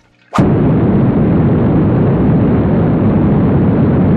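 Cartoon spaceship's rocket engine firing: a loud, steady rumble, heaviest in the low end, that starts abruptly about a third of a second in and holds at full level.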